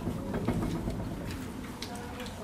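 Whiteboard eraser wiping across the board in short rubbing strokes, with a low pitched voice-like sound underneath.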